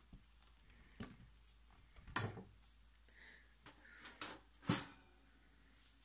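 A few light knocks and clicks of things being handled on a kitchen counter, spread out over several seconds; the loudest comes near the end.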